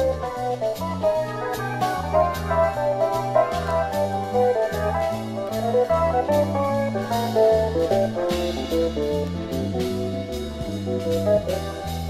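Yamaha Electone electronic organ playing a jazzy instrumental, with a stepping bass line, chords and melody over a steady drum beat.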